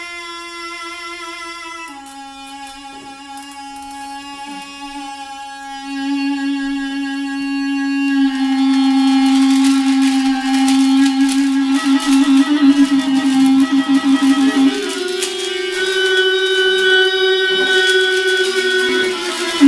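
Free-improvised music: a small wind instrument holds long, steady tones that step down in pitch twice in the first two seconds, waver on a low note and jump higher about fifteen seconds in. From about eight seconds a dense scraping and rattling of percussion on drum heads joins in and grows louder.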